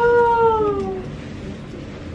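Newborn baby crying: one drawn-out wail that rises slightly, then sinks in pitch and fades out about a second in.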